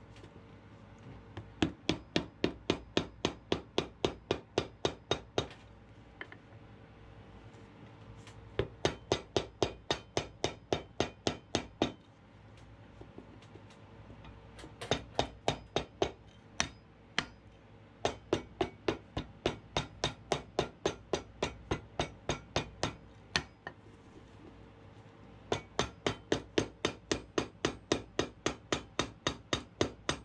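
Cobbler's hammer striking the leather welt of a boot on a cast-iron last, in quick runs of about three to four blows a second separated by short pauses. The welt is being hammered flat to close the channel over the sole stitching.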